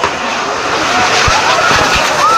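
Fireworks on a torito frame spraying sparks, a loud, steady hiss of burning fireworks, with a couple of low thumps about one and a half seconds in.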